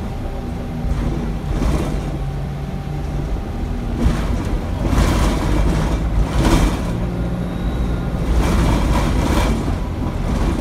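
Interior of a single-deck diesel bus on the move: a steady low engine rumble whose pitch steps a few times as the bus changes speed, with several louder swells of road and cabin noise.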